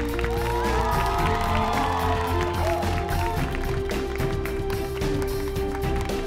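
Closing theme music of a TV quiz show, with sustained held notes over a steady low bed.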